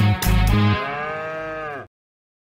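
Band intro music with guitar and bass ends, and a cow's moo follows: one long call that falls in pitch toward its end and cuts off abruptly.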